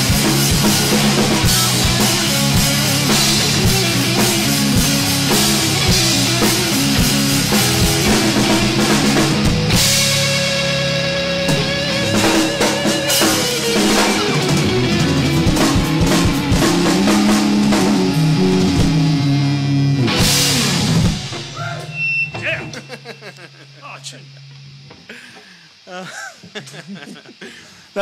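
Live rock band of two electric guitars, bass guitar and drum kit playing a grunge cover at full volume, ending the song with a final hit about three-quarters of the way through. A single low note rings on for a few seconds afterwards, and the sound then falls much quieter.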